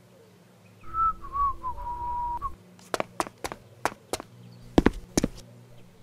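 A person whistling a short phrase that wavers, dips and settles on a held note. It is followed by a series of about seven sharp, irregular taps.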